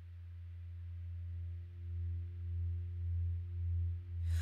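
A low sustained musical drone fading in and growing louder, wavering in a slow pulse about every half second, with fainter higher tones above it: the intro of a song.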